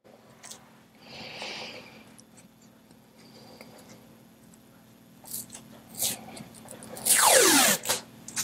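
Faint steady hum with a few light clicks, then near the end a loud hair dryer blowing for under a second, its motor pitch falling steeply, used to dry the wet acrylic paint.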